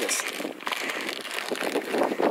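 Speaker wire being twisted by hand onto a BNC banana-clip adapter: scratchy rustling with small irregular clicks of wire and plastic handling.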